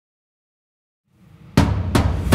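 Intro sting for an animated logo: silence, then a short low swell and a loud impact hit with a deep boom about a second and a half in, and a second, shorter hit just before the end.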